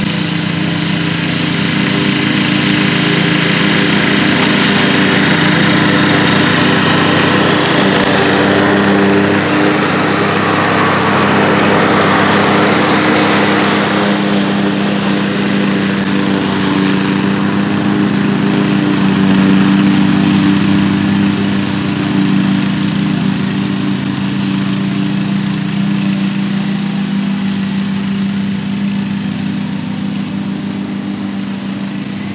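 PowerSmart 209cc walk-behind gas mower's single-cylinder four-stroke engine running steadily under load while cutting and bagging grass. It grows louder as the mower comes close, around the middle, then eases off as it moves away.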